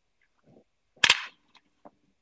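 A golf club striking a ball off a practice mat: one sharp crack about a second in that dies away quickly, with a few faint ticks around it.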